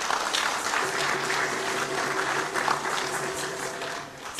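Audience applauding, a dense, steady patter of many hands clapping.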